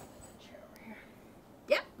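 Faint, steady hospital-room background noise, then a short spoken 'Yep' near the end.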